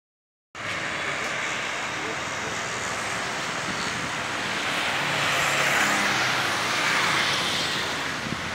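Road and traffic noise from a moving car: a steady rush of tyres and engine that begins about half a second in and swells a little from about five to seven seconds.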